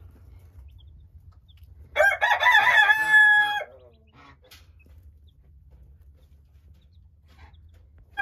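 A rooster crows once, about two seconds in, lasting under two seconds and ending on a long held note.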